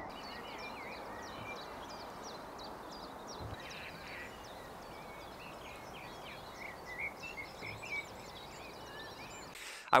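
Outdoor dawn birdsong: many small birds chirping and whistling in short, overlapping calls over a steady background hiss, with a few louder calls near the middle.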